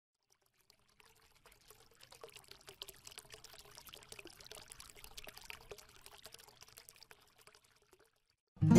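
Faint fizzing, trickling sound made of many tiny rapid clicks, swelling in after about a second and fading away before the end.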